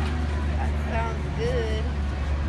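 A loud, steady low engine hum at constant pitch, like a motor vehicle idling, with voices talking faintly in the background.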